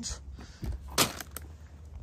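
Handling noise from a plastic-wrapped foam tray of chicken being moved and set down: two short sharp knocks, the louder about a second in, with faint rustling between them.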